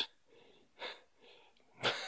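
A man's audible breaths between phrases: a faint short breath a little under a second in, then a louder, sharper breath in near the end.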